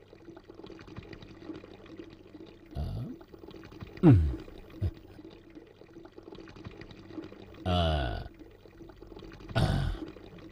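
Comic sound effects of an upset stomach: a few short gurgling sounds that fall steeply in pitch, the loudest about four seconds in, then a longer groaning sound near eight seconds and another just before the end, over a low steady hum.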